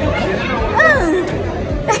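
Restaurant background of chatter and music, with one short rising-and-falling vocal sound about a second in and a laugh near the end.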